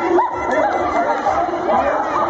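Crowd chatter: many people talking at once, with overlapping voices and no single speaker standing out.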